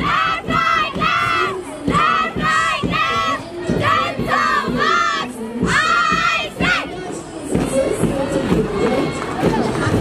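Young women's voices chanting in unison as they march: a string of short, loud shouts in a marching rhythm. The chant breaks off about seven seconds in, leaving a general crowd noise.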